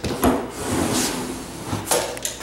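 A 10-inch drywall flat box run up a butt joint on its handle, scraping along the wallboard as it lays joint compound. A thump about a quarter second in as the box is set against the wall, and a short clack near the end.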